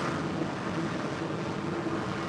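Northrop Grumman X-47B's jet engine running on a carrier flight deck: a steady rushing noise with a faint, even hum beneath it.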